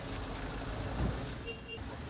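Steady city street traffic noise, a low rumble of passing vehicles.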